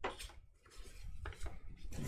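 Quiet handling noises from unpacking packaging: a sharp knock at the start, a crisp click about a second and a quarter in, and light rustling between.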